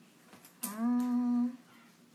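A woman's voice humming one short, level note ("mmm") for about a second, starting just over half a second in.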